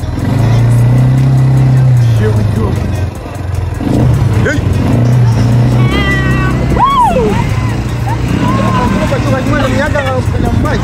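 Quad bike engine running while riding, its note swelling early on and dipping around three seconds in before picking up again. Voices call out over it around the middle and near the end.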